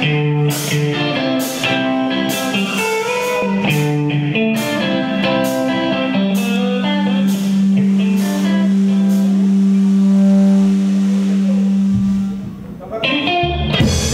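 Live rock band playing a song's guitar intro: a run of picked guitar notes, then a long held low note for about six seconds. The drums and full band come in near the end.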